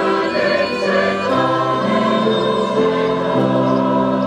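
A choir of mostly women's voices singing a hymn, holding long notes that move to new chords every second or two.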